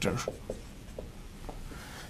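Dry-erase marker writing on a whiteboard: a quick cluster of short strokes, then a few sparser taps about half a second, one second and one and a half seconds in.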